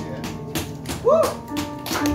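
A live jazz band playing: keyboard chords fade out under a run of sharp drum hits, with a short sliding note about a second in.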